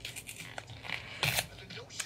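Small handling noises of objects being fiddled with at a desk: light scratches and ticks, with one brief rustle a little over a second in.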